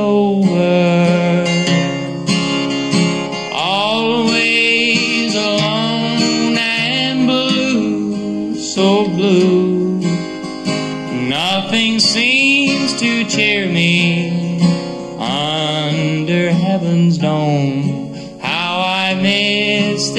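A man's voice yodeling without words, with repeated leaps and swoops in pitch, over a strummed acoustic guitar.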